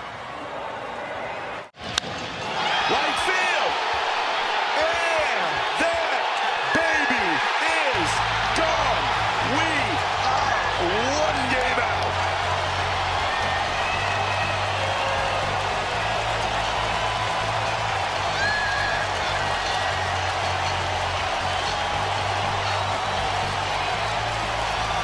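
Large baseball stadium crowd cheering loudly and steadily after a walk-off home run, with whistles rising and falling through it. A low steady hum joins about eight seconds in.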